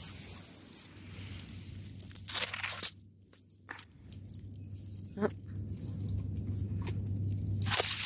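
Dry leaf litter and grass rustling and crunching as someone moves through them, with a few sharper crackles.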